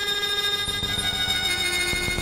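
Patchblocks synthesizer module playing a sustained drone of several steady high-pitched tones with little bass; about one and a half seconds in, one of the tones shifts pitch.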